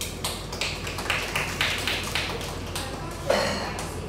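Scattered handclapping from a small group of people: a dozen or so uneven claps, with a louder knock about three seconds in.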